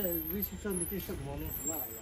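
Two men talking to each other in a local language, with a steady low rumble underneath.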